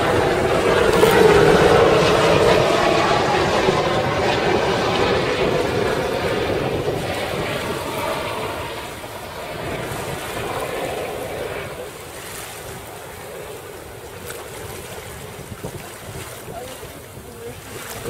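Wind on the microphone and water rushing past a sailboat under sail, a steady noise that is loudest in the first few seconds and eases after about ten seconds.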